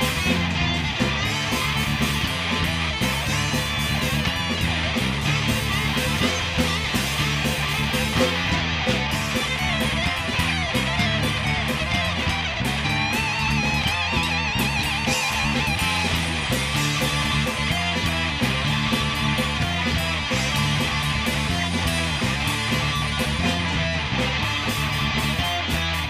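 Live rock band playing an instrumental passage: distorted electric guitars, bass guitar and a drum kit, at a steady loud level.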